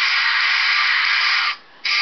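Backing track of a rock song with no voice over it, a dense, hissy wash of distorted guitar. It cuts out briefly about three-quarters of the way through, then comes back.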